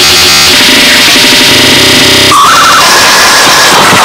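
Loud, harsh electronic noise music with synthesizer tones. The texture changes abruptly a little past halfway.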